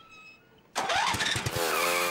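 A vehicle engine sound effect: the engine starts about three-quarters of a second in, its pitch rises and then settles into a steady run.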